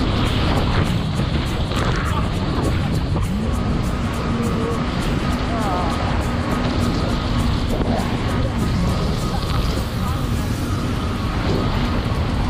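Jet ski engine running at speed, its steady drone rising once about three seconds in, over the rush of water and wind on the microphone, with background music laid over it.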